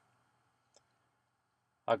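Near silence with a single short, faint click about three quarters of a second in, then a man's voice starts right at the end.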